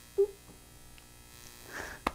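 Faint steady electrical hum and buzz. A brief short voiced sound comes about a quarter second in, and a breath is drawn just before speech resumes.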